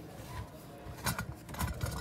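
Faint handling noises from small lock parts on a workbench: a few light clicks and taps, mostly in the second half.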